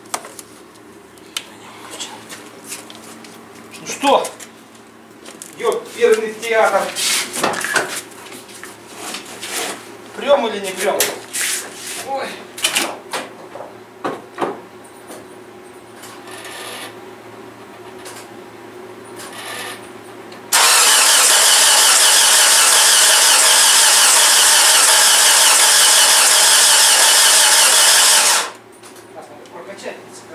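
Starter motor cranking the Mitsubishi Chariot's newly fitted engine on its first start attempt: a loud, steady whirr for about eight seconds in the second half that cuts off suddenly, with no idle following, so the engine does not catch. Before it come scattered clicks and knocks of hand work at the battery.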